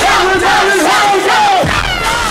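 A packed nightclub crowd yelling and singing out together, many voices sliding up and down in pitch. A low rumble comes in near the end.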